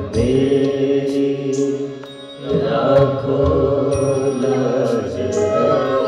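A Hindu devotional song (bhajan) performed live: a harmonium and voices hold long sung notes, with a few sharp percussion strikes. The music drops back briefly about two seconds in, then swells fuller.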